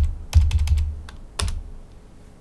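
Computer keyboard keystrokes as a number is typed at a terminal prompt: a few separate key presses, each a sharp click with a dull thud, the last about one and a half seconds in.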